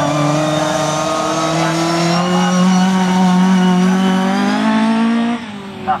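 Autograss race car engine pulling hard, its pitch climbing steadily for about five seconds, then dropping away with a sudden fall in level near the end.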